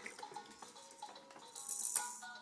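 Electronic tune playing faintly from a baby jumperoo's light-up toy tray, with a brief high rattle near the end.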